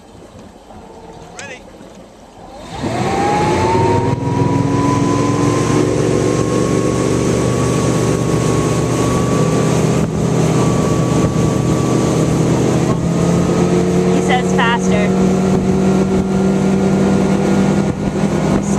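Motorboat engine opening up to full throttle about three seconds in, its pitch rising as the boat accelerates under the load of pulling a barefoot water skier up, then running steady at speed, with wind and rushing water underneath.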